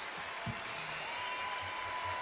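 Large concert audience applauding, a dense steady patter of clapping, with a single steady high tone held through the second half.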